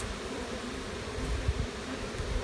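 Honeybees buzzing around an open hive.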